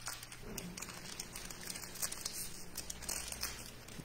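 Foil wrapper of a trading-card pack crinkling in the hands as it is worked open, with scattered crackles.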